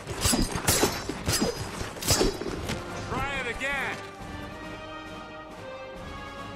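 Film sound effects of kicks striking mannequin dummies and knocking their heads off: about five sharp hits in the first two and a half seconds over background music. A short voiced cry follows about three seconds in.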